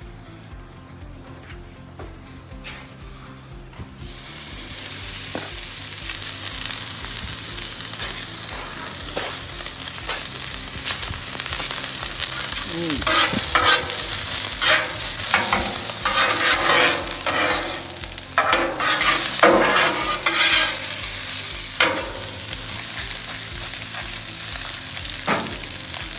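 Sliced ribeye sizzling on a hot Blackstone steel flat-top griddle, the frying hiss swelling about four seconds in. Through the middle stretch, two metal spatulas scrape and chop the meat against the steel surface in quick, sharp strokes.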